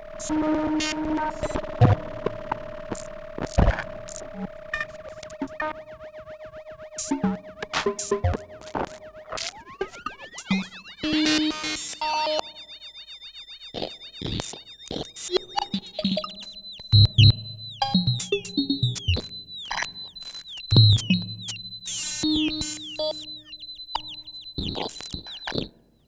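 Serge modular synthesizer patch: a triangle-wave tone ring-modulated through a voltage-controlled crossfader that swings it between normal and inverted phase. A steady mid-pitched tone holds for about nine seconds, then glides up to a high whistle that wobbles with sidebands, over scattered clicks, short blips and low thumps.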